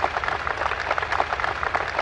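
Large audience applauding, many hands clapping in a dense, steady spread of claps.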